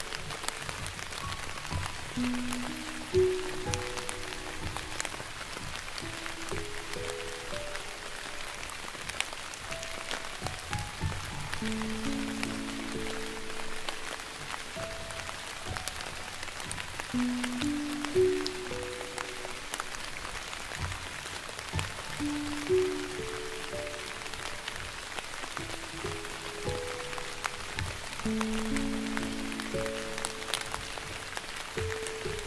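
Slow, gentle piano melody of single notes over a steady hiss of soft rain with scattered drop clicks.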